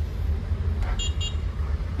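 Low steady rumble inside a car's cabin, with two short high electronic beeps about a second in.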